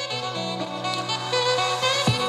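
Music playing back from a cassette on a Panasonic RQ-SX30 personal cassette player, through a small external speaker: a held, horn-like melody over a steady low note.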